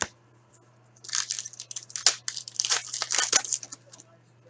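A foil trading-card pack wrapper being torn open and crinkled by hand. It is a burst of crackly tearing and rustling lasting about two and a half seconds, starting about a second in, after a single short tap.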